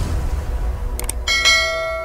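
Subscribe-button animation sound effects: a quick double mouse click about a second in, then a bright bell chime that rings on over a low rumble.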